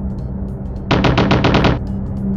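Cartoon propeller-plane sound effect: a steady engine drone, with a loud rapid rattle of about ten beats a second about a second in, lasting under a second.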